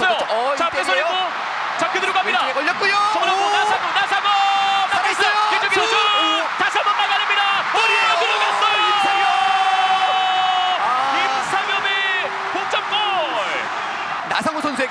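A television football commentator's excited shouting, with drawn-out held calls over a steady background din, as a goal goes in.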